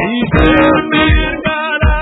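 Live church worship music: an electronic keyboard and a steady low beat, with a congregation singing along.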